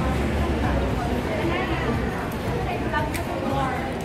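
Indistinct voices of people talking nearby: background chatter in a busy shop.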